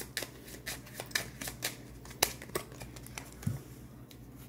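A deck of playing cards being shuffled and handled, a run of irregular light flicks and snaps as cards slide against each other and one is drawn out.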